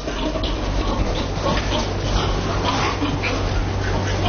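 Anqing six-white pigs making short, scattered noises in their pens over a steady low hum.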